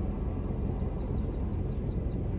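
Car's idling engine heard from inside the cabin as a steady low rumble. A faint, quick row of high ticks comes in during the second half.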